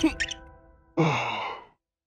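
A cartoon caterpillar character gives one breathy sigh, falling in pitch, about a second in, while the background music fades away.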